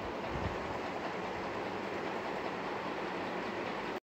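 Steady rushing background noise with a low rumble under it that cuts off suddenly at the end.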